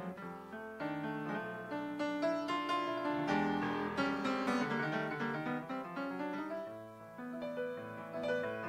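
Grand piano playing a jazz passage of many quick notes in both hands, dipping briefly quieter about seven seconds in.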